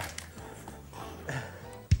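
Quiet stretch of faint background music and room sound, ending in a single short low thump.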